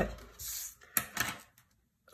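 Tabletop handling of cardstock: a knock at the start, a brief scrape of card sliding over the table, then another light tap and short slide about a second in.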